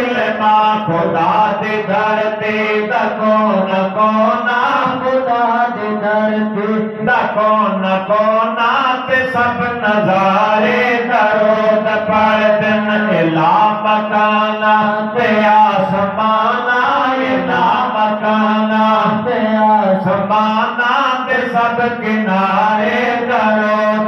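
Male voices reciting a naat over microphones: an unaccompanied, melodic devotional chant that glides and holds long notes, with a steady low drone sustained underneath.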